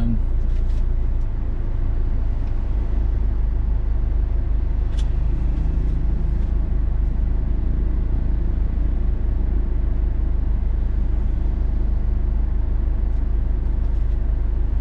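Steady low drone of a Troller 4x4's engine and road noise, heard from inside the vehicle as it drives slowly.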